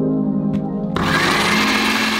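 Soft background music, then a countertop blender switches on about a second in and runs with a steady whir as it blends berries and liquid.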